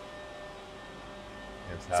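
Steady background hum of a machine shop, with several faint constant tones held at an even pitch and no sudden events.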